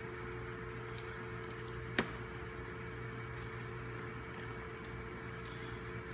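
Steady low machine hum in a small room, with one sharp click about two seconds in and a few faint ticks.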